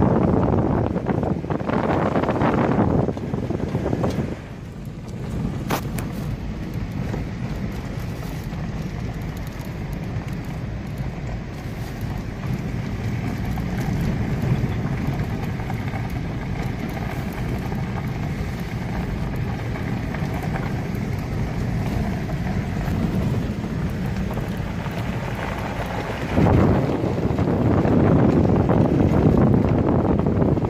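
A car driving on a dirt road, heard from inside the cabin: a steady low rumble of engine and tyres. Wind rushes loudly over the microphone for the first few seconds and again near the end.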